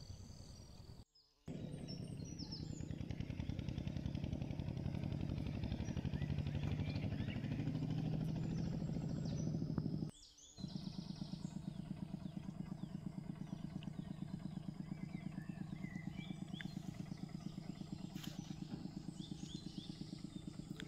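A small engine running steadily with a fast, even low pulse, dropping out briefly twice: about a second in and about ten seconds in. Faint short high chirps sound above it.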